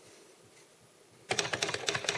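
A rapid run of typing keystroke clicks, like a typewriter sound effect, starting a little past halfway and lasting about a second.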